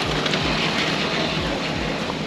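Steady outdoor city-street noise, a broad even rush, with soft low thumps about twice a second.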